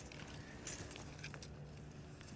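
Faint handling noise as a steel tape measure is drawn down the sign: a few light clicks and rustles about a second in, over a low steady hum.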